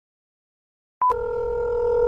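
Silence, then about a second in a short high beep followed by a steady telephone tone from a smartphone's speaker as a call connects.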